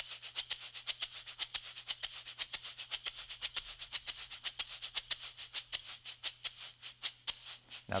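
Large tube shaker played with an even horizontal back-and-forth motion: a crisp, steady rattle of its filling at about eight strokes a second. The filling is balanced along the tube, so the strokes sound clean and alike in both directions.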